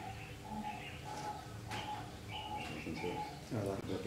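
Doves cooing in a quick run of short, even notes, about two to three a second, with a brief higher chirping of another bird in the middle.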